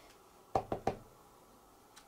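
Three quick, hard knocks of a clear acrylic stamping block against the card and work surface as a rubber-inked stamp is pressed and handled, about half a second in.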